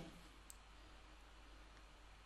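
Near silence: room tone with a single faint click about half a second in.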